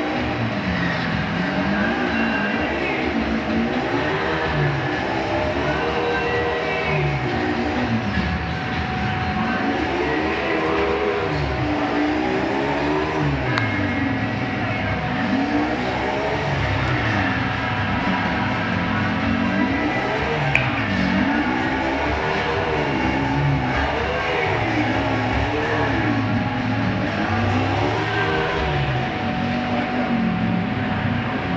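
Two pit bulls growling as they play-wrestle, a rough, pitched growl that keeps rising and falling every second or two without a break.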